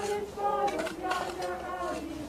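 Mourners singing a hymn unaccompanied, several voices holding long notes, with a few scrapes of shovels in earth and gravel underneath.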